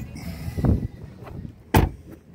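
A vehicle door shut with one sharp, loud thud near the end, after some lower bumping and handling noise about half a second in.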